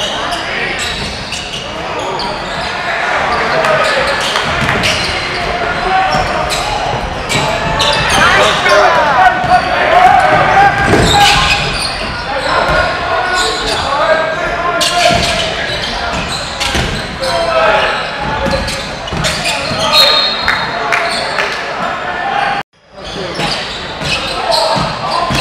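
Basketball game in a large gym: repeated bounces of the ball on the hardwood court under players' and spectators' voices calling out, echoing in the hall. The sound cuts out completely for a moment near the end.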